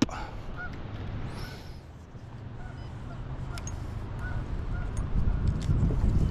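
Geese honking faintly several times over a low wind rumble on the microphone that grows stronger toward the end.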